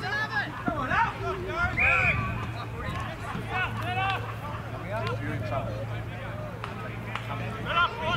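Scattered shouting and chatter from players and spectators at an outdoor Australian rules football match, overlapping voices without clear words. A steady low hum runs underneath and stops near the end.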